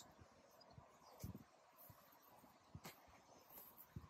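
Near silence: faint outdoor ambience with a few faint, short ticks.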